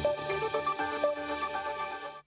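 Electronic theme music of a television news programme's title sting.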